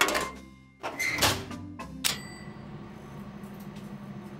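Cartoon sound effects: a sudden whoosh at the start that fades out, a second short burst about a second in, then a bright bell ding about two seconds in whose ringing lingers. A low steady hum follows.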